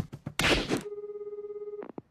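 Telephone ringback tone heard through a phone's earpiece: one steady low buzzing tone with a fast flutter, the Japanese style of ring signal, lasting about a second. It ends in a sharp click as the call is answered, after a short spoken line at the start.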